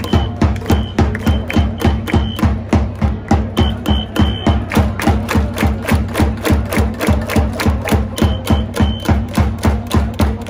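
Baseball cheering section's drums beating a steady, driving rhythm of about three to four strokes a second for the Dragons' chance cheer, with short runs of high steady notes over it.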